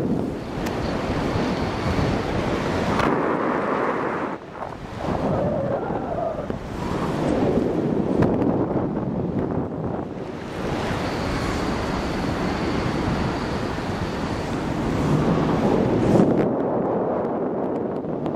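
Wind rushing over the microphone in flight on a tandem paraglider, a gusting, unsteady rush that dips briefly about four seconds in.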